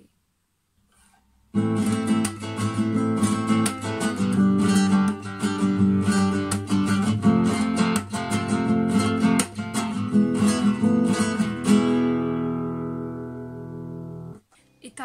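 Nylon-string classical guitar played with rasgueado (fan) strums, the fingers flicked across the strings one after another, through the Corrida progression Am, G, F, E with each chord strummed twice. The playing starts about a second and a half in, and the last chord rings out and fades near the end.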